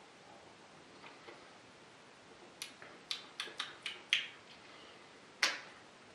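Mouth clicks and lip smacks from tasting a mouthful of beer: a quick run of about seven short, sharp clicks midway, then one louder click near the end.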